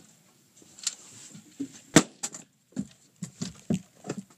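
Precision rifle and gear knocking against a wooden shooting barricade as the rifle is lifted out and repositioned: a string of irregular knocks and clunks on wood, the sharpest about halfway through.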